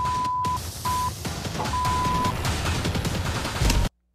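Three censor bleeps, a steady pure beep tone, laid over a loud, noisy reality-TV soundtrack with background music. A low thud comes near the end, then the sound cuts off abruptly to near silence.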